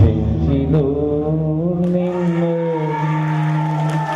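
A man singing into a microphone, a few short gliding phrases and then one long held note through the second half.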